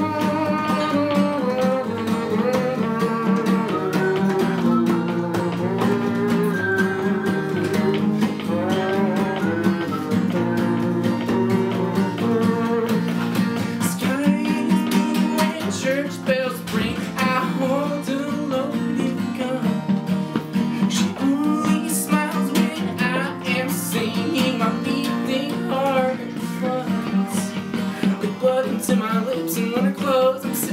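Acoustic guitar strummed steadily through a song passage.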